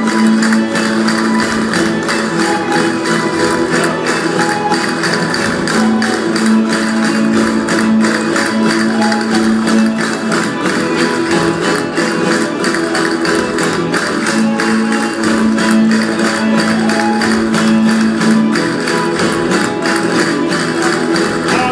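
A rondalla of guitars and bandurria-type lutes plays a fast strummed and plucked jota, with the dancers' castanets clicking in rhythm. A low note is held for about four seconds at a time, three times over.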